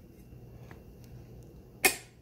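A Marmot 45-degree flip-up front sight pops up on its spring when its button is pressed, with one sharp click near the end.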